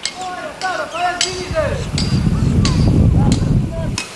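Sharp metal clinks and knocks from climbing hardware and a metal platform frame being handled on a rock face, about one every half second to second. There are short arching calls in the first two seconds, and a low rumbling noise in the second half.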